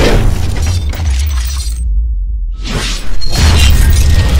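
Cinematic logo-intro sound effects over a deep bass rumble: a sweeping hit at the start, the treble dropping out briefly in the middle, then a rising swell into a loud crashing impact about three seconds in.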